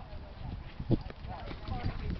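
Paws of running dogs thudding and scuffing on dry leaf-covered ground in a chase, a few separate thumps with the loudest about a second in, with faint voices in the background.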